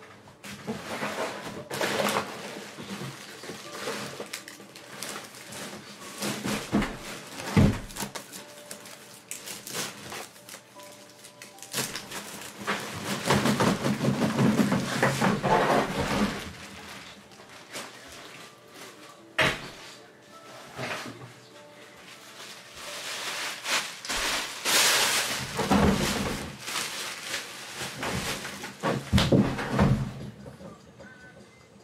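Cardboard and plastic card packaging being handled: irregular rustling and crinkling with frequent sharp knocks and clicks, heaviest in two longer stretches mid-way and near the end.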